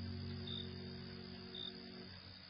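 Faint cricket chirps, a short high chirp about once a second, over the last held notes of the music slowly dying away.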